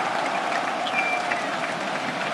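Large football stadium crowd cheering a home goal: a steady wall of crowd noise with no single voice standing out.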